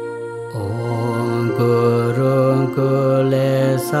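Tibetan Buddhist mantra chanted by a man's voice in a low, near-monotone recitation over a steady instrumental backing. A held chord sounds alone at first, and the chanting comes in about half a second in.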